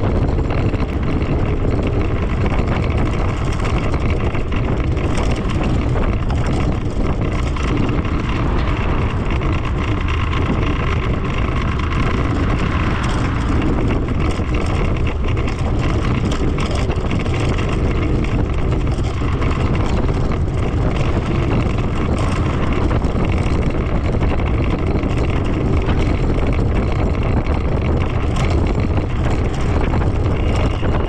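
Steady wind rumble on the microphone mixed with tyre and road noise from an electric scooter riding along at speed.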